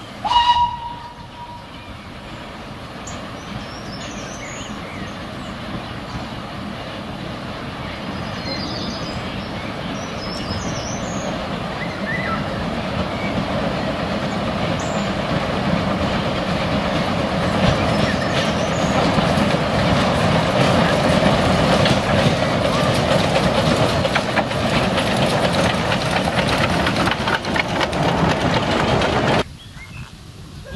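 Henschel Monta 600 mm narrow-gauge steam locomotive giving a short whistle blast, then running toward the listener with the rumble of the engine and its train growing steadily louder, until the sound cuts off abruptly near the end.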